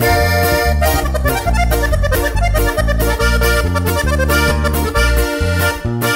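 Accordion playing the instrumental break of a live ranchera, over the band's bass line and guitar.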